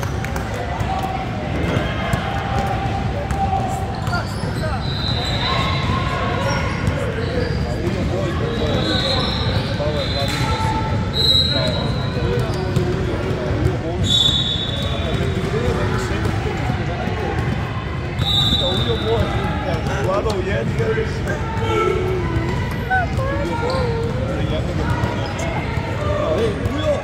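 Basketball game sounds on a hardwood gym floor: the ball bouncing as players dribble and pass, sneakers squeaking in short high bursts several times, and indistinct voices from players and spectators, all echoing in a large hall.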